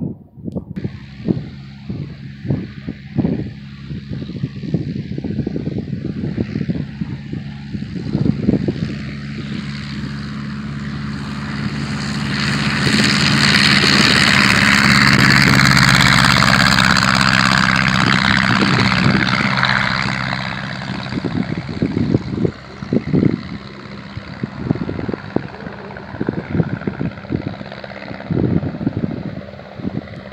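Aeronca Champ light plane's small flat-four engine and propeller at full throttle on the takeoff run. It grows louder as the plane approaches, is loudest as it passes about halfway through, then fades as it climbs away.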